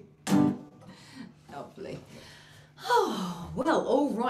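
A single guitar chord struck once, ringing out and fading after about half a second. Near the end a voice comes in with a sharp gasp.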